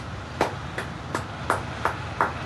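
One person clapping slowly and evenly, about five claps at roughly three a second, in applause.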